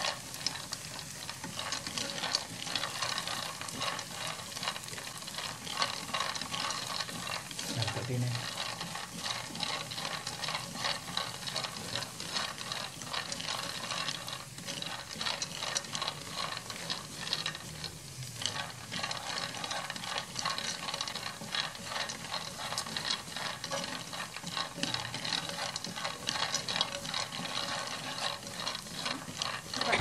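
Peanuts and minced garlic being stir-fried in a nonstick frying pan, stirred with chopsticks: a dense, continuous clatter of peanuts rattling against the pan.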